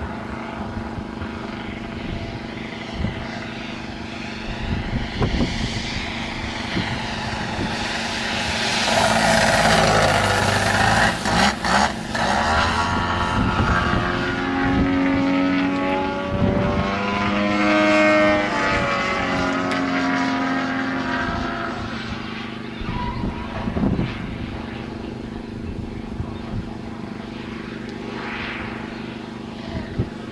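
The twin-cylinder two-stroke petrol engine (DA170) of a 40% Krill Yak 55 model plane running in flight, a propeller drone that swells loudest around ten and eighteen seconds in, its pitch sliding up and down as the plane passes and the throttle changes, then fading as it flies off.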